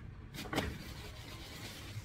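Plastic carrier bag rustling as groceries are handled, with a short knock about half a second in.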